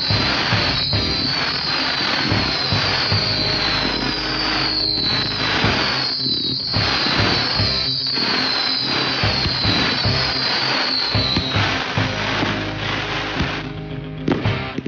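Fireworks display at full barrage: a dense, continuous run of shell bursts and crackle, with a string of high whistles, each falling in pitch, following one another until about three-quarters of the way through. Music plays underneath.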